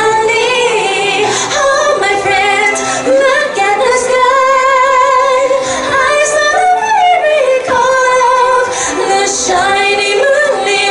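A woman singing solo into a handheld microphone, holding long notes with a wavering vibrato.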